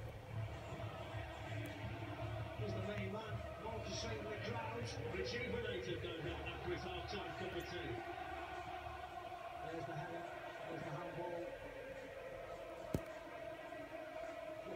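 Televised football match playing in the room: steady stadium crowd noise from the broadcast between the commentator's lines, with a single sharp click near the end.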